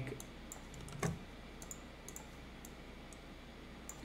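Scattered light clicks of a computer mouse and keyboard, about a dozen in four seconds, one slightly heavier about a second in, over a faint steady low hum.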